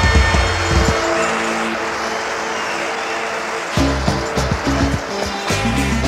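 Instrumental passage of a 1980s Mandarin pop track: the drums and bass stop about a second in, leaving a rushing wash of noise for nearly three seconds, then the bass and drums come back in.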